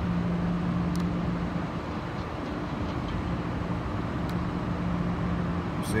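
Steady outdoor machinery hum over a broad rumble. The low hum fades for a couple of seconds midway, then comes back.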